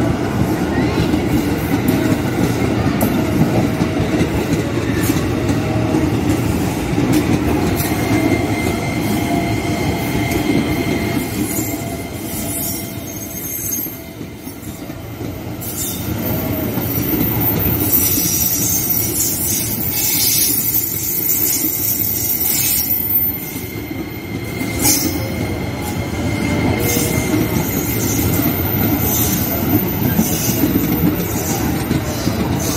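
KRL JR 205 electric commuter train running close past on curved track: a steady rumble of wheels on rail, broken by clacks as the wheels cross the rail joints. From about eight seconds in, a thin, steady high wheel squeal from the curve runs beneath it.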